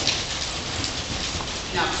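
Horse trotting on loose sand arena footing: soft, indistinct hoofbeats under a steady hiss.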